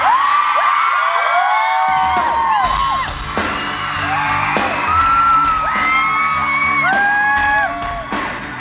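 Concert crowd screaming and whooping, many high voices over each other, above a live pop band. The band's low end is missing at first and comes back about two seconds in, with a few drum hits.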